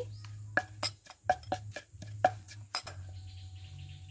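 Kitchen utensils knocking and clinking at a clay mortar: about nine sharp, irregularly spaced strikes in the first three seconds, over a low steady hum.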